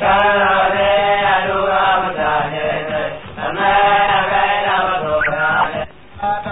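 Hausa praise song: a voice chants two long, melismatic phrases with instrumental accompaniment, the second phrase starting about halfway through.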